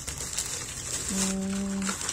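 Plastic bag crinkling as it is handled and opened. Then, about a second in, a short steady hum from a voice.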